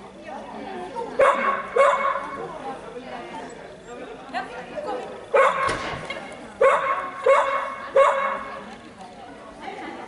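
A dog barking in short single barks, about six in all: two close together, a third later, then three evenly spaced. The barks echo in the hall.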